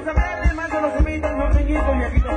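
Dance music with a steady beat of low thumps about twice a second under a pitched melody line.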